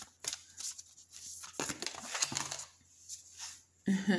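A deck of heart-shaped oracle cards shuffled by hand: irregular soft clicks, slaps and rustles of card stock.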